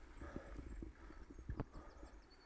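Bicycle jolting over a rough, patched tarmac path: irregular knocks and rattles over a low rumble of tyre and wind noise, with the sharpest knock about one and a half seconds in.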